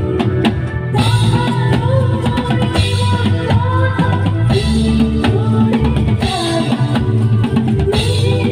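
Live band playing a Bengali film song: a woman sings into a microphone over drums, bass and electric guitar, loud through the stage sound system. The sung phrases come in about a second in.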